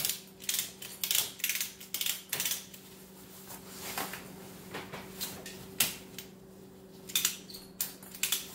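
Boat cover drawstring rope being pulled and worked through its plastic cam buckle, giving irregular sharp clicks and rattles, over a steady low hum.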